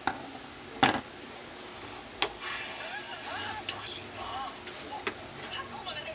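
Sharp clicks and knocks as the printer's plastic control-panel board and casing are handled, five in all spread over several seconds, the loudest a little under a second in.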